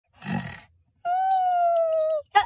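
Snoring: a short rasping snore, then a long steady whistle that falls slightly in pitch.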